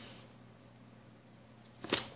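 Quiet room with a faint steady hum, then near the end a short, loud swish as a paper record sleeve is swept close past the microphone.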